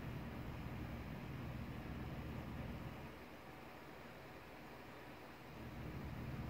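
Faint steady background hiss with a low rumble that fades about halfway through; no distinct sound event.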